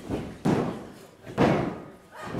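Wrestling referee's hand slapping the ring canvas twice, about a second apart: the count of a pinfall, reaching two.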